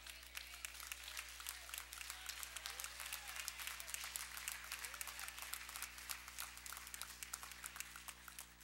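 Congregation applauding, many hands clapping steadily, with voices calling out over the clapping.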